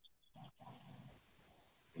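Near silence, with a faint, brief noise a little under a second in.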